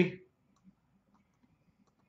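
A few faint clicks from computer controls as a list of names on screen is selected.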